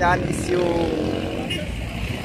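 Road traffic on a busy street: a steady low rumble of vehicle engines, with one engine note passing and falling slightly in pitch partway through.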